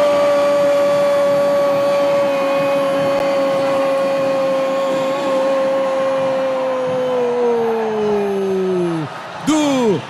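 Sports commentator's long held shout of "gol", one sustained note for about nine seconds that holds steady and then slides down in pitch near the end, over crowd noise.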